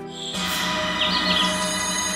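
Tense drama background music that swells in about a third of a second in, with a pulsing low line under sustained higher tones. A brief high chirping sound comes near the middle.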